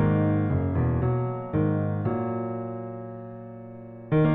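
Sampled acoustic grand piano (Salamander Grand Piano soundfont) playing chords in a slow passage. The last chord, struck about two seconds in, is held and dies away through the rest.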